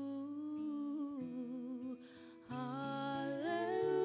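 A woman singing live into a microphone, holding long notes with vibrato over soft sustained accompaniment chords. Halfway through she pauses briefly for a breath, then starts a new phrase that climbs in pitch.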